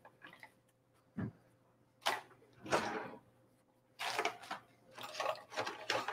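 Soft rustling of drop-cloth fabric being handled and unfolded, in a few short bursts, with a light knock about a second in.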